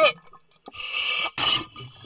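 A diver breathing in through a scuba regulator while wearing a full-face communication mask: a hiss about half a second long, starting about two-thirds of a second in, with a short break near its end.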